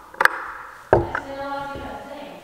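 A wrench and metal parts clinking against a planter gauge wheel's hub and arm as the bolts are worked. There are two sharp clicks near the start, then a louder metallic clank about a second in that rings briefly.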